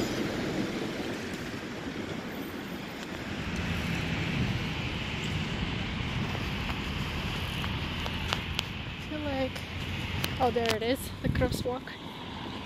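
Steady outdoor background noise of wind and distant traffic, with a few words of people talking about nine to eleven seconds in.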